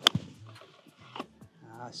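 A golf iron striking the ball from the fairway: one sharp, loud crack of impact right at the start.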